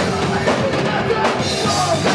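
Live rock band playing: drum kit, bass and electric guitar in a dense, continuous wall of sound.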